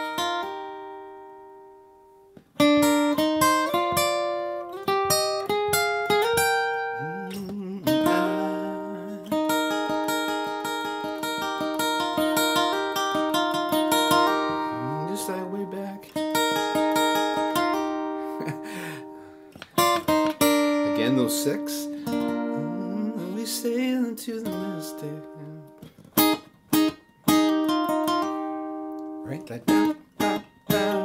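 Capoed cutaway steel-string acoustic guitar, picked and strummed through a chord progression with melodic fills. A note rings out and fades at the start, and the playing starts again about two and a half seconds in.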